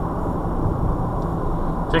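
Steady road and engine noise heard inside a car's cabin while cruising at about 35 mph.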